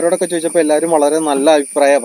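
A man talking, over a steady, thin, high-pitched whine.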